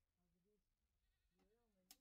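Near silence, with faint bleating from livestock and a single sharp click just before the end.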